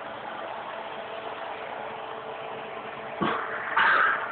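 A steady hum with one faint constant tone under hiss. A short sharp sound comes about three seconds in, and a man laughs right at the end.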